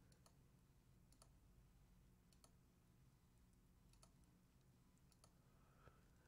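Near silence: room tone with a dozen or so very faint, scattered clicks.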